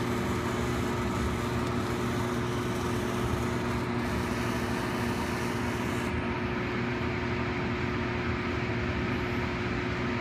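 Biological safety cabinet's blower running with a steady hum. Over it, the hiss of a motorized pipette aid drawing medium up a 25 mL serological pipette, which cuts off about six seconds in.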